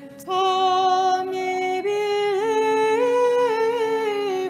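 Unaccompanied Orthodox liturgical chant: a female voice sings a slow melody that climbs step by step and falls back near the end, over a second voice holding one steady low note.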